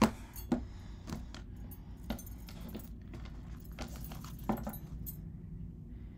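Scattered light clicks and rattles of oracle cards being handled on a table, with beaded bracelets clinking on the wrist, over a faint steady low hum.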